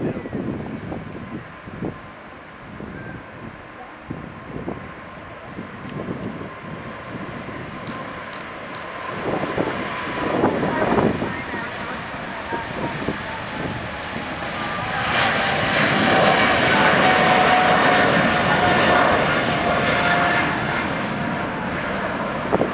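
Boeing 777-200LRF freighter's twin GE90 turbofans at takeoff thrust through the takeoff roll and climb-out, growing louder and at their loudest about fifteen to twenty seconds in. A steady engine whine runs through it, one tone sliding slightly lower in pitch as the jet passes and climbs away.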